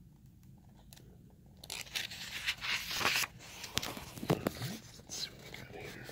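Paper pages of an art book being turned and handled: a rustle of paper starting about two seconds in, then a few shorter rustles and light taps.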